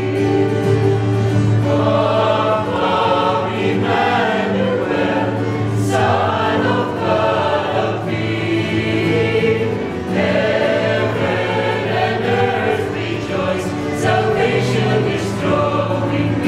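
A group of men and women singing a Christmas carol together, with a steady low tone held underneath.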